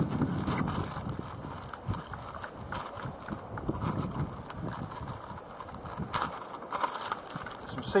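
Clear plastic bag of frozen squid bait being handled and opened, giving irregular crinkling and crackling.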